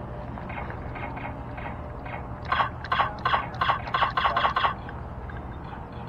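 A rapid string of electronic laser tag gun firing sounds, about five shots a second, starts a little after two seconds in and stops after about two seconds, over a steady low hum.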